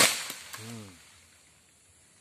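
A sudden sharp crash with a rising swish of leaves before it, like a cut oil palm frond coming down through the foliage. A man hums briefly just after.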